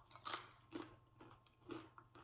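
Close-miked chewing of a tortilla chip: a few short crunches at uneven intervals with quiet between them.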